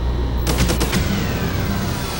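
Edited-in transition sound effect: a quick rattle of sharp clicks, then a thin tone that falls slowly in pitch over a low hum.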